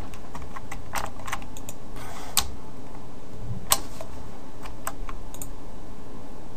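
Irregular clicks and taps from a computer keyboard and mouse, over a steady hiss. Two of the clicks, about a second apart near the middle, are louder.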